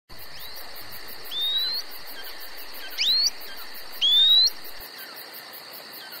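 A bird calling with a rising, upward-slurred whistle, four times over about four seconds. Behind it, insects keep up a steady high buzz and a fast, evenly pulsing trill.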